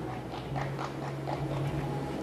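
Carom billiard balls in a three-cushion side-rotation shot, knocking into each other and the cushions in a string of light clicks as the shot scores.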